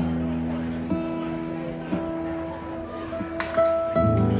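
Acoustic guitar chords strummed and left to ring, a new chord about once a second, with a brighter higher note ringing out near the end: loose playing on stage, not yet a song.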